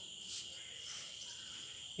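Steady, high-pitched chirring of insects such as crickets in the background.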